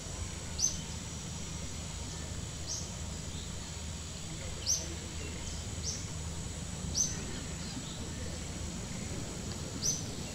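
A bird's short, sharp high chirps, one every second or two, about six in all, over a steady low rumble of outdoor background noise.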